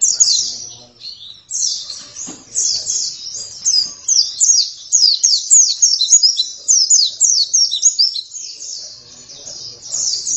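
White-eye (pleci) singing a fast, loud song of high, quickly falling notes, several a second. It gives a short burst at the very start, pauses briefly, and from about a second and a half in sings almost without a break.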